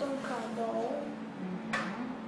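Speech in the first part, then a single sharp tap near the end: a picture card being set down on a wooden table.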